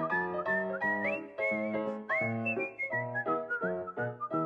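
Cartoon end-credits music: a whistled melody, sliding between notes and rising to its highest notes about a second and two seconds in, over a bouncy chordal accompaniment.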